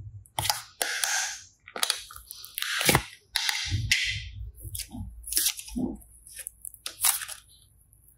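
Hands handling a popsicle-shaped slime toy and squeezing slime: a run of irregular crackles, clicks and squishy pops.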